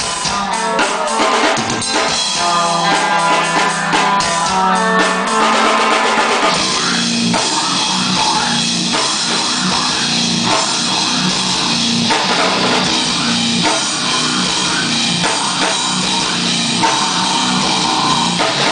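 A live rock band playing guitar and drum kit. About six and a half seconds in, the sound changes from a riff of separate picked notes to a denser, fuller texture.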